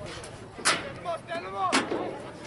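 Two sharp, loud cracks about a second apart, with short shouted calls in between.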